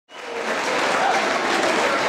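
Audience applauding, fading in over the first half second, with a few voices faintly audible in it.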